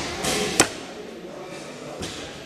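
Recurve bow shot: one sharp snap of the string on release, a little over half a second in.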